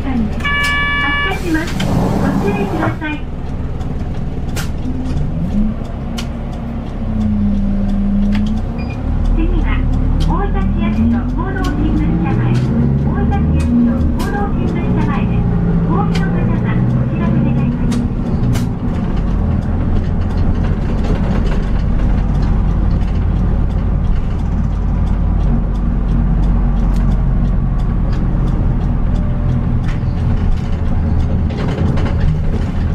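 Diesel city bus engine running, heard from inside the cabin as the bus pulls away and drives on, its low hum growing stronger a few seconds in. A short chime sounds near the start.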